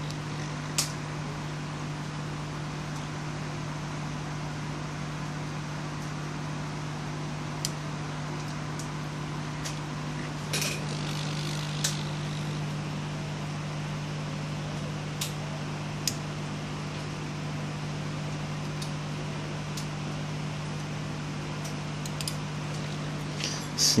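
Hot air rework gun blowing steadily onto a phone circuit board, a constant fan hum, heating the solder to free the SIM card slot. A few short clicks break in now and then.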